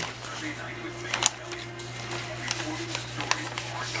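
Sheets of paper rustling as they are handled and shuffled, with a few short, sharp crinkles, over a steady low hum.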